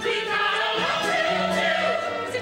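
A musical-theatre ensemble singing together, several voices at once, over instrumental accompaniment, recorded live from the audience.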